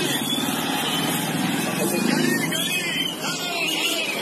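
A motor vehicle engine running steadily close by in street traffic, with people's voices over it.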